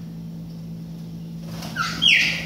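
A steady low hum, then near the end a loud call from a chopi blackbird (pássaro-preto), gliding down in pitch.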